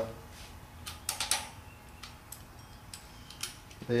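A few light, sharp metallic clicks and taps, several close together about a second in, as a distributor is handled and seated in an air-cooled VW Type 1 engine.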